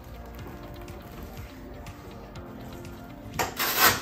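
Soft background music, then near the end a loud rustling rub lasting about half a second as the patient's body and clothing shift on the padded treatment table.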